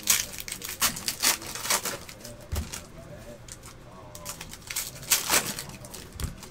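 Glossy trading cards being handled and slid against one another: an irregular run of short, crisp clicks and rustles, loudest in a cluster about five seconds in.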